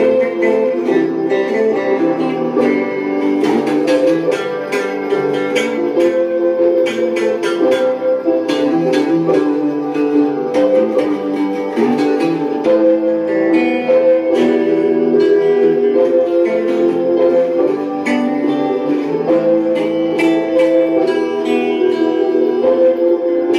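Instrumental break of a song: guitar playing lead lines, with many quick plucked notes, over steady piano chords.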